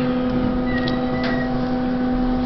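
A steady low-pitched mechanical hum with overtones, unchanging throughout, with a faint thin high tone briefly about halfway through.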